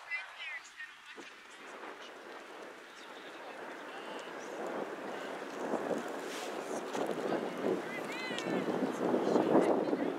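Distant, indistinct voices of players and spectators calling out, growing louder toward the end, with a high-pitched shout about eight seconds in.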